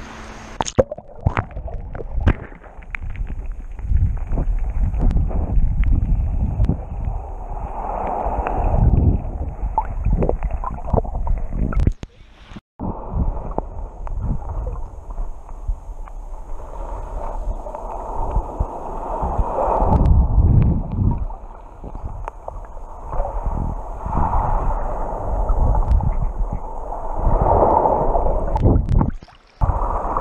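Muffled sloshing and gurgling of shallow sea water around a camera held under the surface, dulled by its waterproof housing, with small knocks and swells. The sound cuts out briefly about twelve seconds in and again near the end.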